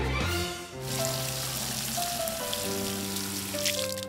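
Liquid gushing and splashing out of a wide hose in a steady rush that stops just before the end, over light background music. The last notes of a theme tune end in the first moment.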